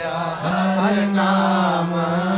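Sikh shabad kirtan: male voices sing a devotional hymn in unison over a harmonium's sustained notes. The voices swell back in about half a second in.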